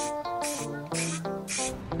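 Background music with a melody of held notes, over short repeated hissing bursts of an aerosol spray-paint can, about two a second.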